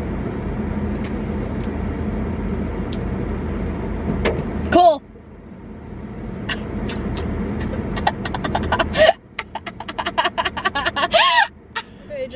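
A car's climate-control blower fan running, a steady rush with a low hum. About five seconds in it breaks off with a short vocal sound and then swells back. From about nine seconds it gives way to laughter and sharp clicks.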